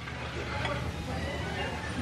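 Restaurant background noise: a steady low hum under an even wash of room noise, with faint voices of other diners.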